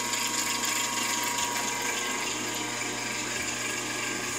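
Hardinge DV-59 lathe running steadily: a constant mechanical noise with a faint steady whine.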